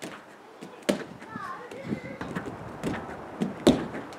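Thuds of a gymnast landing on an inflatable air track during repeated back tucks: a few separate impacts, the loudest near the end. A short vocal sound comes about a second and a half in.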